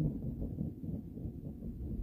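Metal stovetop coffee percolator perking on a camp stove, with low, faint gurgling and bubbling as the coffee is pushed up into the glass knob.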